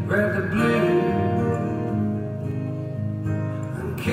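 Acoustic guitar strummed steadily as solo live accompaniment, with no singing, a little softer in the second half.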